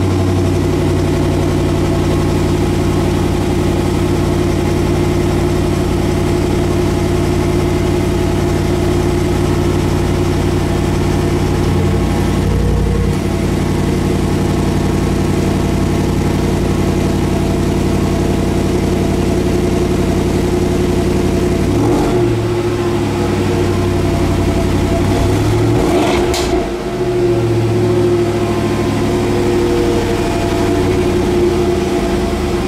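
Jaguar F-Pace SVR's supercharged 5.0-litre V8 idling steadily through its valve-controlled exhaust, with a short rev blip about 22 seconds in and a bigger rev that rises and falls a few seconds later.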